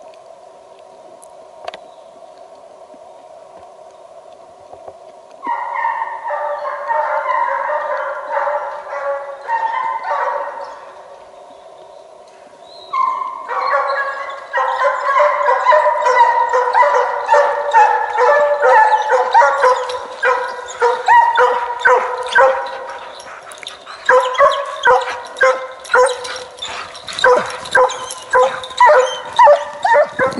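A Russian hound baying as it drives a hare on a hot scent. The baying starts about five seconds in and breaks off briefly near the middle. It then resumes and grows louder as the hound closes in, ending in a rapid run of bays.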